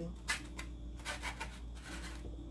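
A paintbrush scraping and tapping lightly on a plastic plate a few times as excess paint is worked off, over a faint steady hum.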